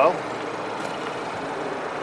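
Ford Fiesta's 1.0-litre three-cylinder petrol engine idling, quiet and smooth: a steady, even running sound with no knocks and no change in speed.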